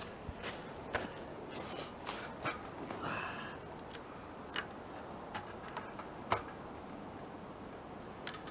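Faint, scattered clicks and knocks of a shotgun being handled on a shooting bench, with a few footsteps in snow at the start.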